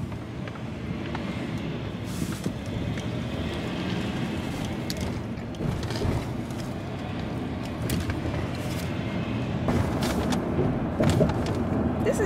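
Steady low rumble of a car's cabin, with scattered small clicks and rustles on top. It grows a little louder near the end.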